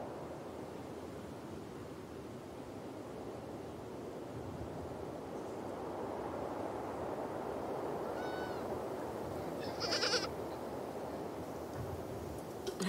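Steady outdoor background noise, with a faint animal call about eight seconds in and a short, louder animal call near ten seconds.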